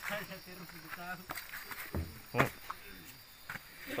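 Steady high-pitched drone of night insects, with a short low thump about two seconds in.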